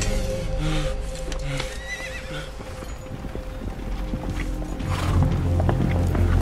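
Film soundtrack with steady music under it, a horse whinnying briefly in the first half and horse hooves clip-clopping, growing louder from about five seconds in.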